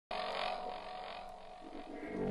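Logo intro sound effect: a hissing swell that starts suddenly and fades over about two seconds, with faint steady tones underneath.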